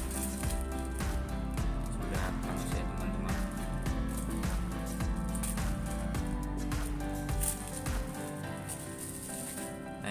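Background music, with a thin plastic bag crinkling and crackling as a sharp golok (machete) blade slices through it in a sharpness test. The music's bass drops out about eight seconds in.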